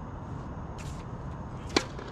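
Tennis racket striking the ball on a serve: one sharp crack near the end, over a steady low background rumble.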